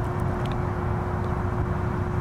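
Steady low rumble of wind on the microphone, with a faint, steady hum from the propellers of a DJI Mavic Mini drone flying away.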